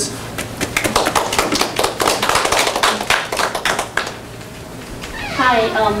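Audience applauding for about four seconds, then dying away.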